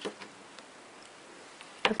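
Quiet room tone with a few small clicks from craft wire and wire cutters being handled, one at the start and a couple near the end.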